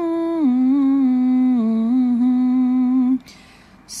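A single voice humming a slow, drawn-out line of the psalm refrain's tune with closed lips, stepping down in pitch a few times over about three seconds, then a faint hiss near the end.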